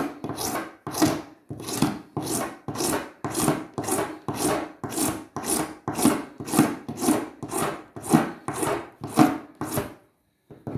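A steel hand file rasping back and forth across a plastic ukulele saddle in steady strokes, about two a second. The saddle is being filed down about half a millimetre to lower the string height.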